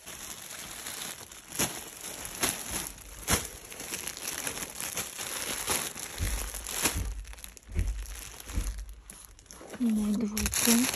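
Clear plastic bags crinkling and rustling as packaged clothes are handled and sorted, with many short sharp crackles and a few low handling bumps in the second half.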